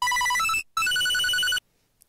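GarageBand software synth playing a quick run of short, high, repeated notes. It comes in two phrases, a brief one and then a longer one pitched slightly higher after a short gap.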